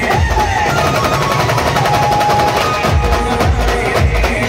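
Loud Maharashtrian band-party music, amplified through the rig's speakers: fast, dense drumming with heavy bass under a melody held in long notes.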